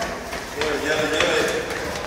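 A man's voice calling out, over the noise of people hurrying down a staircase.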